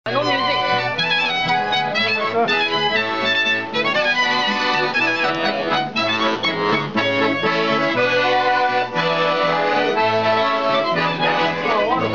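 Piano accordion and violin playing a lively traditional tune together live, the accordion's chords and a steady pattern of bass notes under the violin's wavering melody.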